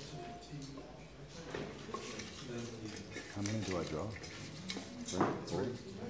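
Faint, indistinct chatter among audience members in a large lecture hall, with a few light knocks and clicks; one voice is louder for a moment near the end.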